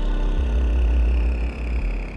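Downtempo electronic music: a deep sub-bass note swells about half a second in and drops away near the end, under a slowly falling synth sweep, with no drum beat.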